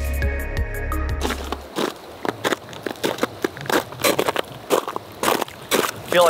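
A stretch of music ends about a second and a half in. After it come footsteps in steel crampons crunching on glacier ice and surface snow, a steady walking rhythm of short sharp crunches.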